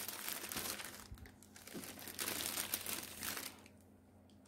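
Thin clear plastic bag crinkling as a skein of yarn is handled and slipped into it, in uneven bursts that die away near the end.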